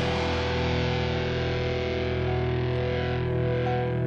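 Music: a held, distorted electric guitar chord ringing on, its brightness fading away near the end.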